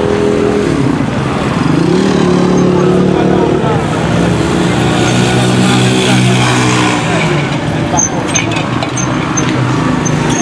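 A motor engine revving, its pitch rising and falling several times, with people's voices mixed in.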